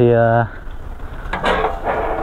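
Mainly a man's voice: one drawn-out word about half a second long, then a short breathy, noisy sound near the end, over a steady low rumble.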